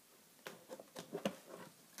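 A few faint, short taps and clicks from craft items being handled on a tabletop.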